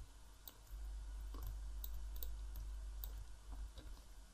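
Faint computer mouse clicks, a handful at irregular intervals, as shapes are selected and dragged into place.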